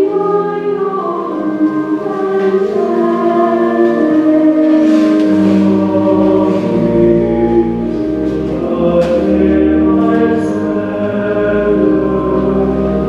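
Slow hymn music with a choir holding long chords that change every second or two; a deep bass line comes in about halfway through.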